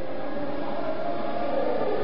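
Steady crowd noise from a packed stadium: a continuous din of many spectators with no single event standing out, swelling slightly in the second second.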